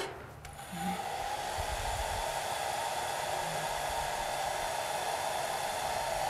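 Handheld hot-air blower switched on about half a second in and then running steadily, blowing hot air onto a glued decoupage paper motif to dry it.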